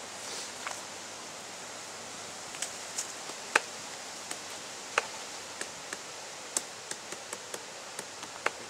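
Scattered small, sharp clicks and soft rustling from hands splitting wet nettle-stem fibre into thinner strips, over a steady hiss of outdoor background.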